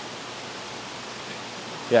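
Steady, even hiss of a fish room, from water circulating and aerating through many aquarium tanks, with no distinct events. A voice starts to speak right at the end.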